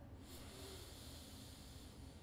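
A slow inhale through one nostril, the other held shut, in alternate nostril breathing: a faint, steady airy hiss lasting nearly two seconds.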